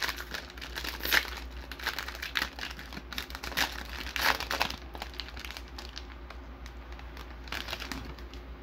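Clear cellophane wrapper of a hockey card hanger pack crinkling in irregular crackles as it is worked open by hand, louder in the first half.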